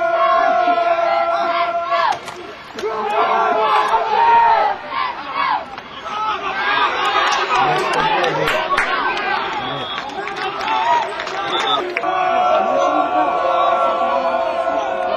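A group of people shouting and cheering together, many voices overlapping, with a steady held tone in the first two seconds that returns at about twelve seconds.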